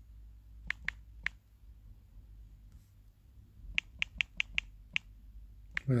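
Sharp, light clicks: three about a second in, then a quicker run of about six starting around four seconds in, over a faint low hum.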